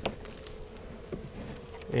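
Honey bees buzzing around an open hive as the frames are worked, a steady hum, with a couple of faint clicks.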